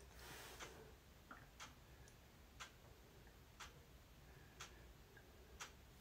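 Near silence with faint, even ticks, about one tick a second.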